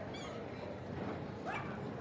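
Yorkshire terrier giving two short high-pitched yips, the first right at the start and the second, rising in pitch, about one and a half seconds in, over the steady murmur of a large indoor hall.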